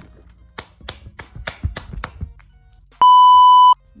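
A loud, flat electronic bleep lasting under a second, about three seconds in, of the kind edited in to censor a spoken word. Before it comes a run of quick clicks and taps as a sandal and its packaging are handled.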